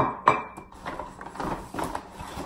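A glass bottle set down on a kitchen counter with a sharp clink, a second knock just after, then a string of lighter knocks and clatter as groceries are handled.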